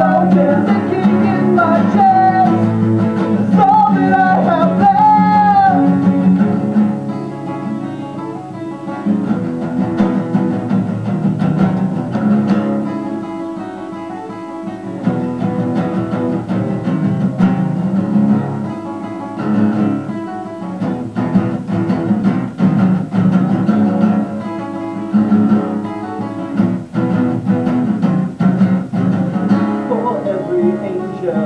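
Live acoustic performance: two acoustic guitars strumming with a man singing over them for the first six seconds or so, then an instrumental guitar passage that drops in loudness for a while before building again.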